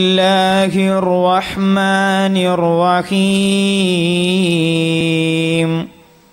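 A man's voice chanting a long melodic phrase of Arabic devotional praise, with drawn-out held notes and ornamented turns, briefly broken twice, ending near the end.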